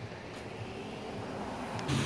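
Steady outdoor background noise, a featureless hiss that slowly grows louder, with a low hum coming in just before the end.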